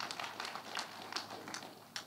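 Irregular soft clicks, a few a second, over a faint background murmur.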